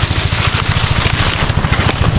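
A nearby engine-driven irrigation water pump running steadily with a fast, low chugging, loud and unbroken. Dry grass and leaves rustle as hands push through them.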